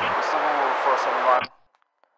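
Police radio transmission: a voice speaking over a steady static hiss, which starts abruptly at the beginning and cuts off sharply after about a second and a half, leaving silence.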